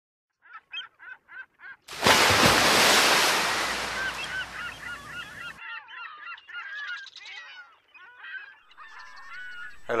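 A quick run of six honking bird calls, then a loud rush of noise that lasts about three and a half seconds and cuts off abruptly, with a crowd of chattering bird calls over and after it.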